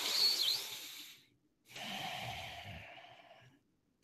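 A man breathing deeply close to a microphone: two long breaths, the first at the start and the second beginning nearly two seconds in.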